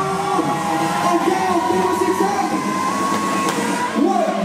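Live dance-pop music playing loudly through a club sound system, with long held and gliding melody notes over the noise of a packed crowd.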